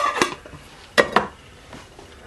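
Small metal cooking pot being handled and set down on a wooden table: two pairs of sharp metal clinks, one at the start and one about a second in.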